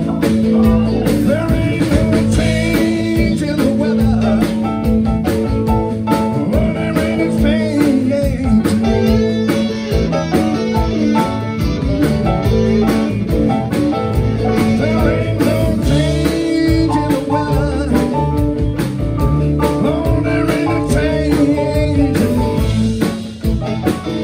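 Blues band playing live: electric guitars, bass, keyboard and drum kit in a steady, loud groove.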